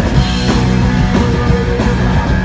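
Live punk rock band playing loud: electric guitars, bass and drums.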